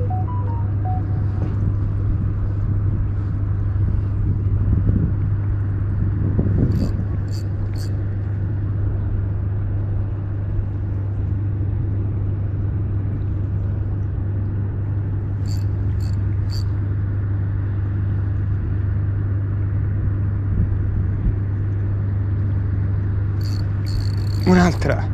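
A steady low hum over a continuous rumble, unchanging throughout, with a few faint short clicks in two groups of three, about seven and sixteen seconds in.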